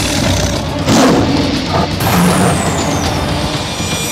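Dramatic sound effects for a tiger confronting a snake: loud, rough, hissing growls and snarls, with the strongest burst about a second in, under a high whistle-like sweep that falls in pitch from about two seconds in.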